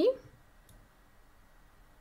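A single faint computer mouse click about two-thirds of a second in, making a move in an online chess game, against near silence after a word ends.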